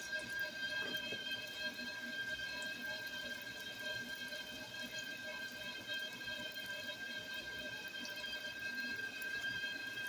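Donut dough frying in a pan of hot oil: a soft, even sizzle with faint scattered crackles. A steady high-pitched whine runs under it.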